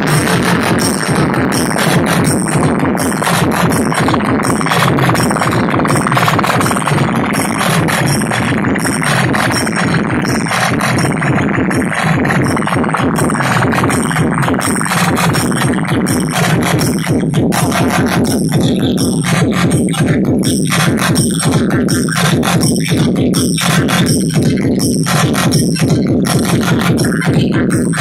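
Loud electronic dance music played through a DJ sound system's horn loudspeakers, with a steady heavy beat. About two-thirds of the way through the mix thins out and the beat hits stand out more sharply.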